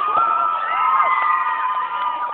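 Several high-pitched voices shouting and screaming together in excitement, with long held cries overlapping for most of the two seconds before tailing off near the end.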